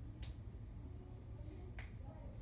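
Two short, sharp snaps of the hands, about a second and a half apart, over a steady low hum.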